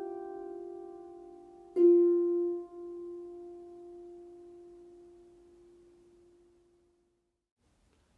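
Lever harp played one note at a time with the right thumb: the previous note is still ringing, then a single lower note is plucked about two seconds in. It is the closing note of the melody line, left to ring and fade away over several seconds.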